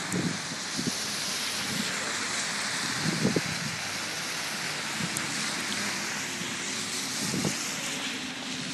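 Steady hiss of police vehicles passing slowly in a procession, tyre and road noise, with a few short low bumps.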